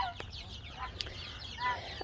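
Young olive egger and naked neck chickens peeping and cheeping softly in many short falling chirps, with one louder short call near the end.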